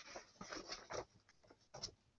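Faint scratchy strokes against paper, several in the first second and another near the end, typical of handling or writing on lecture notes.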